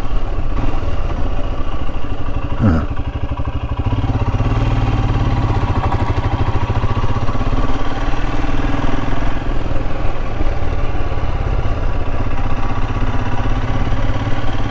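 Royal Enfield Himalayan's single-cylinder engine running steadily at road speed, its exhaust pulses even and regular. The engine note gets a little louder from about four seconds in.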